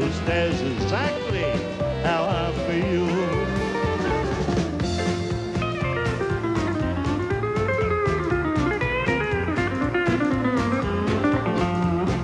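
Pedal steel guitar taking an instrumental break over a country backing band, its notes sliding up and down in pitch.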